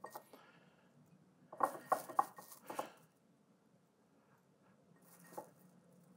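Dry decarboxylated cannabis being crumbled by hand and dropped into a glass jar. A quick run of light crackles and taps comes about a second and a half in and lasts about a second, with one more faint tap near the end.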